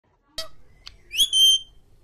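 African grey parrot whistling: two short clicks, then a loud note about a second in that glides upward and is held briefly before stopping.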